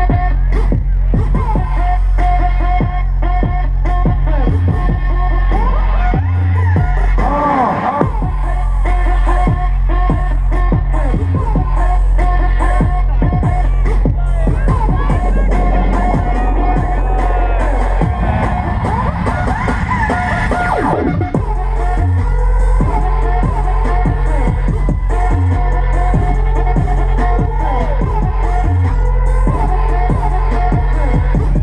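Loud live electronic dance music over a large sound system, with heavy steady bass and a beat. About eighteen seconds in the bass drops out under a rising build-up, and it comes back in a drop about three seconds later.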